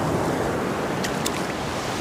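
Shallow surf washing in over sand at the water's edge: a steady rush of foamy water, with a few faint ticks about a second in.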